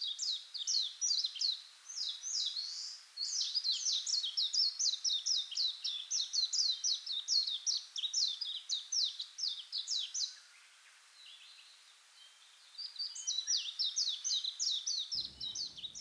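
Small birds chirping in a fast, steady run of short, high, downward-sweeping chirps, several a second; they fall quiet for about two seconds past the middle, then start again.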